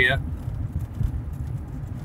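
A loaded scrap truck's engine and road noise heard from inside the cab as it drives slowly: a steady low rumble.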